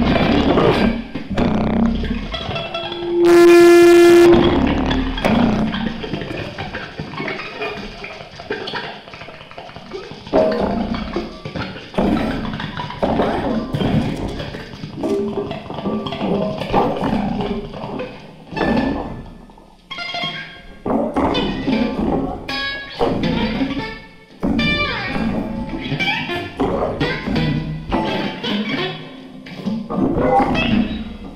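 Free improvisation for amplified wooden board with electronics and electric guitar: dense, irregular knocking, scraping and clattering on the board mixed with short plucked guitar notes. About three seconds in, a loud held tone sounds for about a second.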